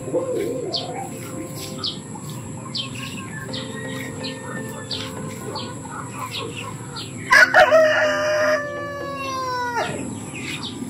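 A rooster crows loudly about seven seconds in, one long crow that ends on a falling note. Short high chirps from birds repeat throughout.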